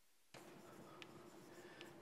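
Chalk writing on a blackboard, faint scratching with a couple of light taps, about a second in and near the end.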